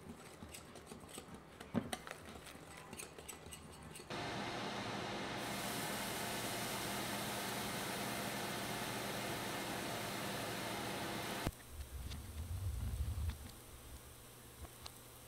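A spoon stirring pancake batter in a glass bowl, scraping and clinking against the glass. After about four seconds a steady hiss sets in as batter is poured into a hot oiled frying pan and fries, cutting off suddenly; a short low rumble follows near the end.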